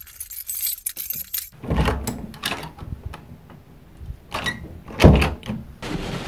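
A run of light clicks and rattles, then several dull thumps and knocks, the loudest about five seconds in.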